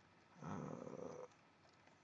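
A man's drawn-out hesitation 'euh', soft and about a second long, then quiet.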